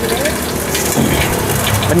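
Bánh xèo (Vietnamese rice-flour crêpe) batter sizzling in several hot woks: a steady hiss with fine crackle.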